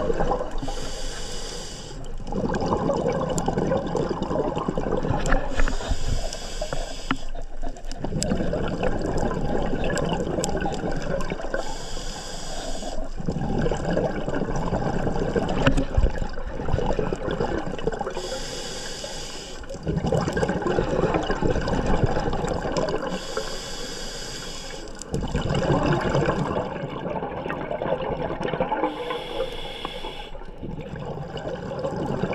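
Scuba diver breathing underwater through a regulator: six hissing inhales, about every five to six seconds, each followed by a few seconds of exhaled bubbles rushing out.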